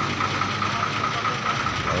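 Ashok Leyland 12-wheeler truck's diesel engine idling steadily while the truck stands still, with a steady high-pitched whine above the low engine note.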